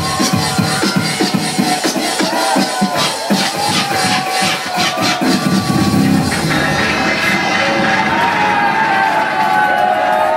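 Loud electronic dance music from a DJ set over a club sound system, with a steady beat and a crowd cheering. About seven seconds in, the beat thins and the treble falls away, leaving sliding tones.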